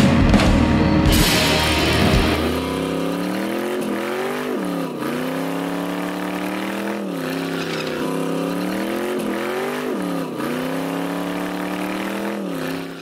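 Viper V10 engine in a 1971 Plymouth GTX held at high revs during a burnout. The revs climb and then drop sharply, again and again, about every second and a half to two seconds. Music plays for the first couple of seconds.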